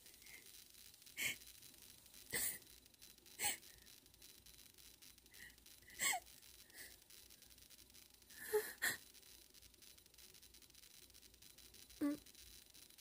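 A woman crying quietly: a series of short sniffles and gasping breaths every second or so, with two close together near the end.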